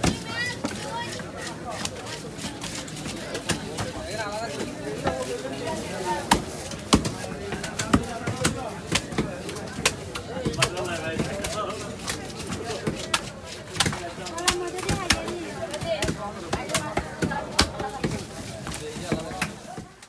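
Heavy cleaver chopping through a large catla carp on a wooden block: sharp, irregular chops throughout, with voices chattering underneath.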